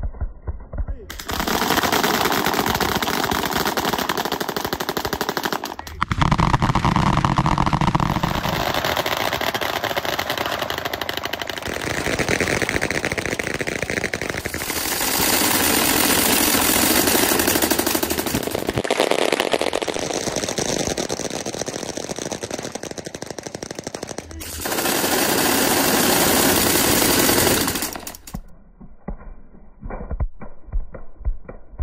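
Several machine guns firing tracer rounds at once: dense, continuous automatic gunfire in a few back-to-back stretches that change abruptly. About a second in the gunfire cuts in, and about two seconds before the end it cuts off, giving way to a low, muffled throbbing beat.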